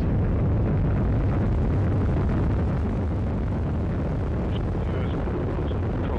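Atlas V rocket's RD-180 first-stage engine at full thrust during liftoff and climb: a loud, steady, deep rumble that eases slightly about halfway through.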